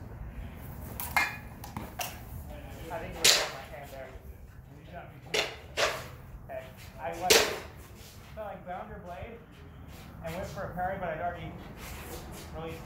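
Steel sparring swords, a rapier and a jian, striking in a fencing exchange: several sharp clacks of blade contact, the loudest about three and seven seconds in.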